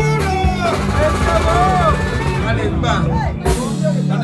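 Live band music with a steady bass line and drums, and voices over it.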